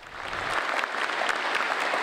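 A church congregation applauding in assent to the bishop's election of the candidates for the diaconate. The clapping builds over the first half second, then carries on steadily.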